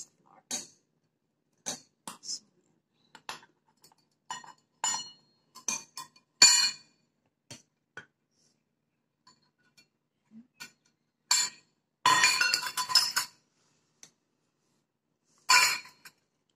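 Stainless steel measuring cups clinking and knocking against a stainless steel mixing bowl, with a spatula scraping in the bowl: scattered single clinks, a quick run of rapid clinks about twelve seconds in, and another loud cluster near the end.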